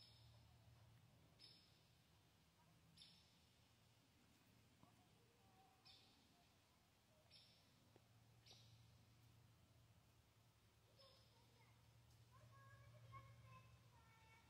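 Near silence: faint room tone with a low hum and a few faint, short high-pitched ticks every second or two.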